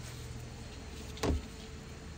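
A single short knock a little over a second in, as a water-fed pole brush's microfiber pad meets the window glass, over a steady low hum.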